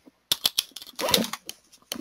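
Typing on a computer keyboard: a quick, uneven run of separate keystroke clicks as a word is typed.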